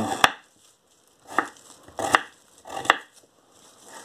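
A knife cutting through beetroot on a wooden cutting board covered with plastic film: four sharp cuts, spaced roughly a second apart.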